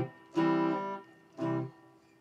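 Strat-style electric guitar: a chord is played and held for about half a second, then a second, shorter chord comes about a second and a half in, and both ring out and fade.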